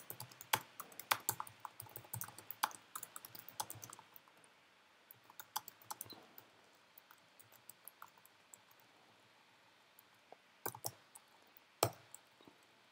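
Typing on a computer keyboard: a quick run of keystrokes for the first few seconds, then scattered, slower keystrokes, with a couple of sharper clicks near the end.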